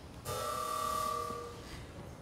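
A steady held tone of several pitches sounding together, lasting about a second and a half and fading out near the end.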